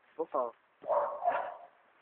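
A man's vocal noises: two quick short yelps, then a hoarse, breathy sound lasting about a second.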